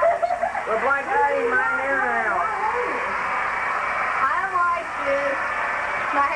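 People talking and laughing indistinctly over a steady hiss.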